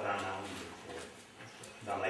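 A man's voice speaking in a room, with a short pause in the middle.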